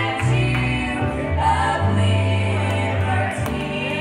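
Young women's vocal group singing a gospel song in harmony, with grand piano and acoustic guitar accompaniment and long held bass notes underneath.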